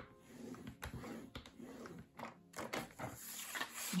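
Sheet of scrapbook paper being scored and handled on a paper trimmer's scoring board: faint scraping and rustling with a few light clicks, as fold lines are scored 1 cm from the edges.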